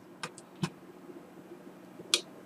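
Three light computer mouse clicks in the first second, over a faint steady low hum.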